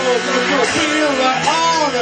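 Live rock band playing, with a male lead vocal in long notes that slide up and down over electric guitar.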